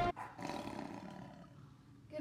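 Big-cat roar sound effect, starting just after the music cuts off and fading away over about a second and a half.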